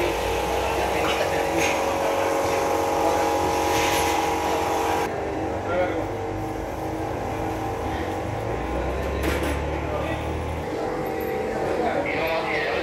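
Steady mechanical hum made of several held tones, with a low drone beneath and indistinct voices in the background; the higher hiss drops away about five seconds in.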